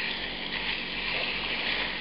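Pepper-crusted beef steak sizzling steadily in hot olive oil in a frying pan, just laid in oil side down.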